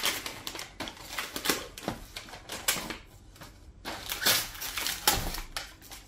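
Gift wrapping paper being torn and crinkled by hand as a present is unwrapped: quick, irregular rips and rustles, easing off briefly about three seconds in.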